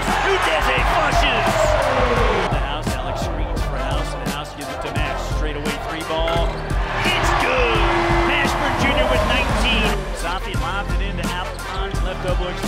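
Basketball game sound from a packed arena: crowd noise swelling just after a dunk and again a few seconds later, with ball bounces, under background music with a steady beat.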